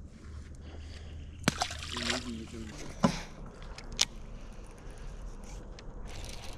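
A few sharp knocks and clicks in a small aluminum fishing boat over a low steady hum, with a brief faint voice about two seconds in.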